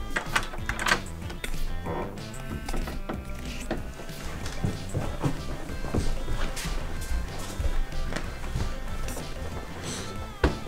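Background music with a steady beat, and a thunk of a door being opened near the start.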